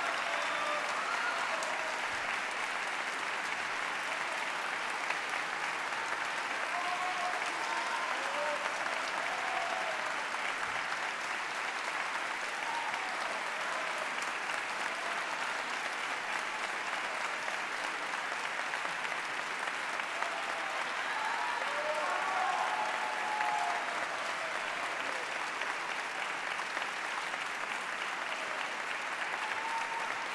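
Audience applauding steadily at the close of a soprano aria, with a few voices calling out from the crowd now and then.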